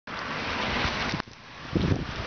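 Rain and wind outdoors: a steady hiss that drops off sharply just over a second in, followed by low gusts of wind buffeting the microphone near the end.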